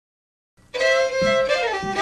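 An old-time fiddle tune starts abruptly about half a second in, out of silence, with a guitar accompaniment plucking steady bass notes under the fiddle.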